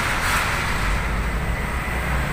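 Street traffic noise: a steady low rumble of road vehicles, with a passing vehicle's noise swelling and fading in the first second.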